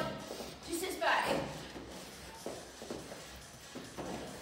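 Feet stepping and landing on foam floor mats in a quick two-steps-forward, two-steps-back drill, giving a few soft thuds, with a short breathy vocal sound about a second in.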